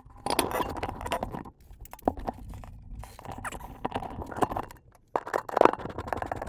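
Handling noise from a Heil PR40 microphone being worked on by hand and with a screwdriver at its pop-filter mount: irregular scraping, clicks and rubbing of metal parts, picked up close through the mic itself, with two short pauses.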